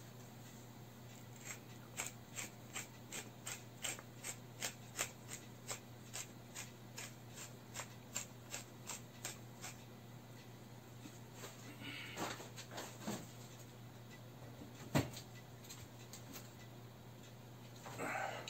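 Wooden pepper mill being twisted to grind pepper: a steady run of small clicks, about three a second, lasting some eight seconds. Later a soft rustle and a single knock.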